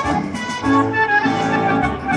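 Casino video slot machine playing its bonus win-tally music, a bright tune of short sustained notes, as the win meter counts up after the free spins.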